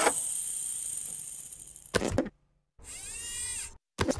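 Animated-intro sound effects: a high hiss that fades out over the first two seconds, a short clatter at about two seconds, then about a second of a pitched tone that rises and falls slightly.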